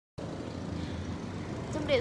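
Steady low background rumble and hum of room ambience, then a voice begins speaking near the end.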